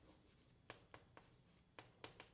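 Faint writing on a lecture board: four light, sharp taps and strokes in the second half, over quiet room tone.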